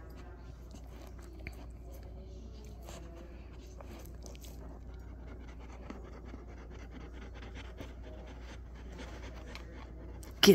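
Quiet dog licking and sniffing at close range: faint scattered soft clicks and mouth sounds over a steady low hum.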